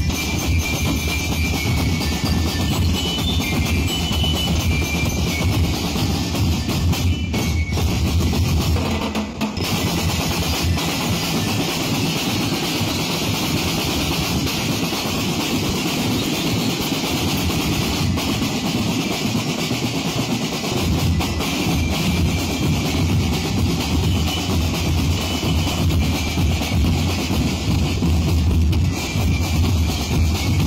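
Street drum-and-lyre band playing an Ati-Atihan beat: massed bass drums, snare drums and cymbals, with short high bell-lyre notes near the start and end. The deep bass drums drop out for about ten seconds in the middle, then come back in.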